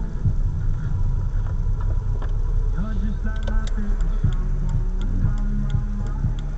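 Music with singing from a car radio inside the cabin, over the car's low running hum. About halfway through, a turn-signal indicator starts ticking about three times a second.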